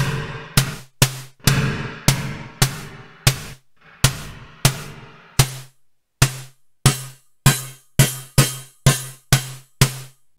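Synthesized snare hits from an Arturia MicroFreak, struck about twice a second through a convolution reverb, delay and transient shaper, coming through clean with no crackle at the maximum 2048 buffer size. The reverb tails grow noticeably shorter about halfway through as the convolver's stretch is turned down.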